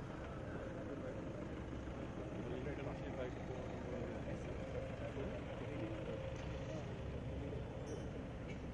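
Indistinct voices of several people talking over a steady low outdoor rumble.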